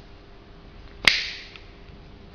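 A single sharp plastic click about a second in, trailing off briefly: a push-fit fitting's release tool snapping over copper tubing.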